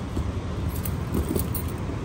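A utility knife drawn along the packing tape of a cardboard carton: a few light clicks and scrapes about halfway through, over a steady low rumble.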